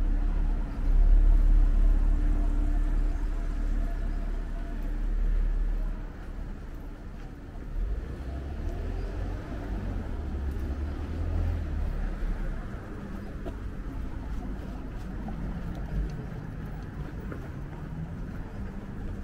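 City street traffic: a car engine rumbles close by for about the first six seconds, then falls away to the lower hum of cars passing on the road.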